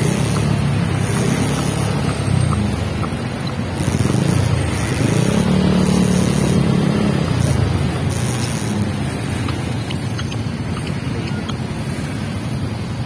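A motorcycle engine running at low speed in slow city traffic, with nearby vehicle engines and wind noise on the microphone. The hum swells for a few seconds mid-way.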